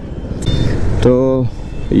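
Wind noise on the rider's microphone over the low running noise of a motorcycle moving at low speed, with a man's short spoken word about a second in.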